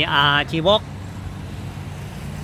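A steady low background hum, vehicle-like, runs under a man's voice, which speaks one short word in the first second and then falls silent.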